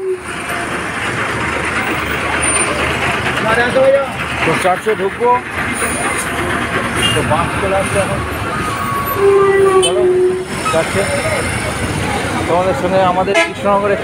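Busy street traffic: motorbikes and other vehicles running close by, with people talking in the crowd. A vehicle horn sounds one held note for about a second, roughly nine seconds in.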